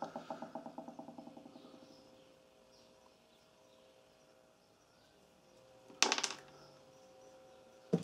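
Small metal carburetor parts being handled on a wooden bench: a quick run of light ticks that fades away over the first two seconds, then near silence, then a brief clatter of small parts about six seconds in.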